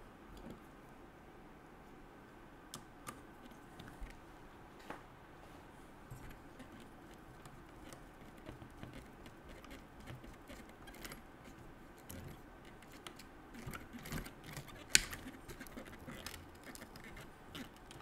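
Faint scattered clicks and taps of small metal parts being handled: a screw coated with thread lock being worked and then driven with a hex driver into a nitro RC car's engine mount. The clicks get busier over the last few seconds, with one sharper click a few seconds before the end.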